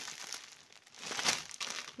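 Clear plastic sari packets crinkling as they are handled and shifted. The rustling drops away briefly just before the middle, then comes back louder.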